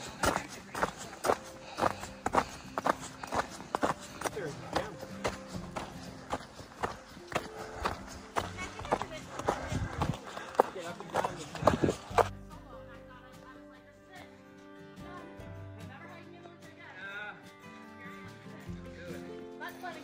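Footsteps on a packed-snow trail, about two steps a second, over background music; about twelve seconds in the footsteps stop abruptly and only the music carries on.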